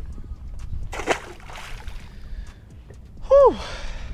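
A released redfish splashes into the water beside the boat about a second in. Near the end a person gives a brief, loud exclamation that falls in pitch.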